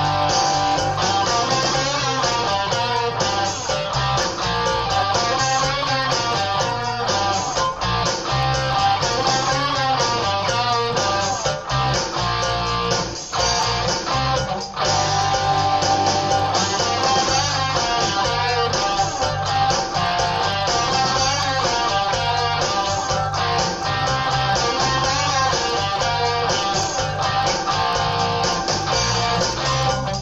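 Southern rock instrumental cue: a doubled electric guitar riff in a minor key over a four-on-the-floor kick drum, drum kit and bass guitar.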